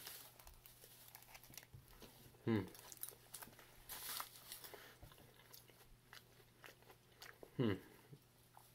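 Quiet chewing of an oatmeal muffin, with soft crunches and small mouth clicks, and two short hummed 'hmm's, one about two seconds in and one near the end. About four seconds in, a brief rustle of aluminium foil as a hand touches a foil hood.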